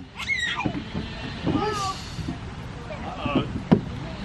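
Short bursts of voices: a high-pitched voice just after the start and adult voices, with a single sharp knock near the end, over a low background rumble.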